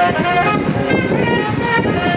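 A saxophone playing a melody in held notes, some with a wavering pitch.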